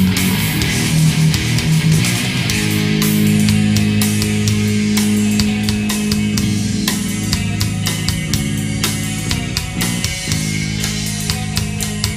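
Death/thrash metal recording: distorted electric guitars hold low riff chords over a drum kit playing dense, even strikes, without vocals. The guitars shift to a new chord about two and a half seconds in and again near the end.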